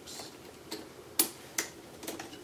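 Phillips screwdriver turning the small metal screws of an iMac's RAM access door, giving a few separate sharp ticks and clicks of metal on metal, the loudest just past halfway.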